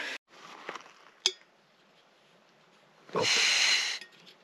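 A single sharp click, then near the end about a second of steady hissing: unlit gas escaping from the burner of a Jetboil Flash backpacking stove as its fuel valve is opened.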